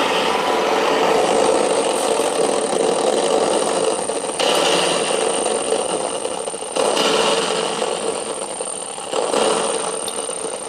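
Exposed springs of a spring reverb tank scraped and prodded with a thin wire and amplified through a feedback pedal, giving a harsh, dense noise drone with a steady hum underneath. The texture surges anew with sudden jumps several times.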